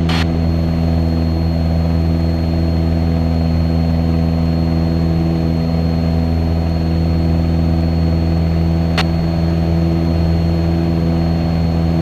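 Cessna 177 Cardinal's engine and propeller droning steadily in flight, heard inside the cabin. A faint steady high whine runs under it, and there is a single sharp click about nine seconds in.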